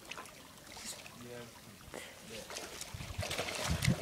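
Water splashing as a person slides off a rock ledge into a rock pool, getting louder near the end, with faint voices in the background.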